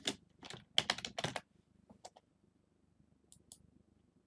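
Computer keyboard being typed on: a quick run of keystrokes in the first second and a half, followed by a few faint clicks.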